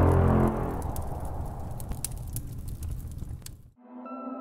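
Logo-intro sound effect: a deep rumble with sharp fire crackles, fading over about three and a half seconds. It cuts off suddenly near the end, and a steady ringing musical tone starts in its place.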